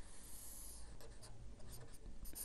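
Marker pen writing on a white surface: faint scratching strokes as a line is drawn.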